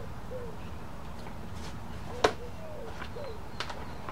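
Leather scabbard strap being pulled around a motorcycle fork and fastened by hand, with one sharp click about two seconds in and a few lighter clicks near the end.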